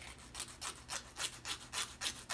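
An emery board filing the edge of a big toenail in quick short back-and-forth strokes, several rasps a second, smoothing off the rough edges left by rounding the nail.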